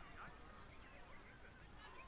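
Faint, distant shouts and calls from players and spectators, many short scattered cries over a low, steady background rumble.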